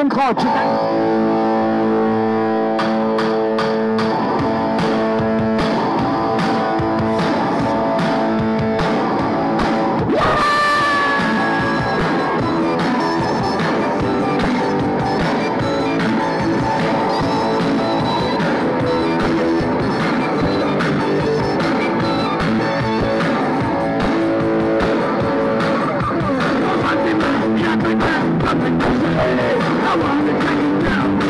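A live rock band plays a traditional tune, recorded loud from the audience: electric guitar, drums and held melody notes. The band comes in fuller and louder about ten seconds in.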